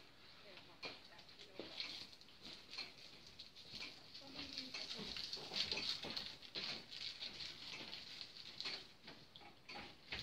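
Faint, irregular crinkling of a chocolate wrapper being unwrapped by hand.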